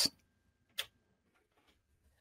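Near silence with a single short, sharp click a little under a second in.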